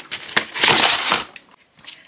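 Cardboard toy packaging being handled, a rough scraping rustle lasting under a second with a few small clicks around it.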